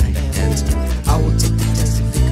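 Alternative rock band playing an instrumental stretch: guitar over held bass notes and steady drum and cymbal hits, with the bass moving to a new note about a second in.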